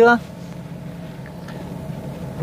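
Steady low hum of a car's cabin, with the engine and running noise heard from inside the car.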